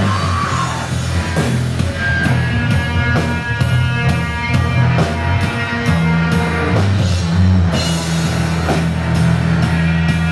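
A live heavy rock band playing loud: distorted electric guitar and electric bass over a drum kit, with a steady beat of drum and cymbal hits about three a second.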